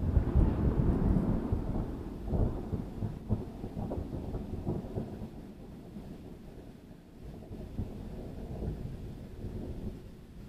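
A loud thunderclap: a sudden crack that breaks into a long rolling rumble, strongest in the first two seconds. Further cracks come about two and a half and four seconds in, and it fades to a lower, steadier rumble.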